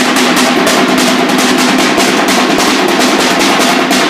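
Rapid, steady drumming accompanying a Samoan fire knife dance, heard through a phone microphone with little low end.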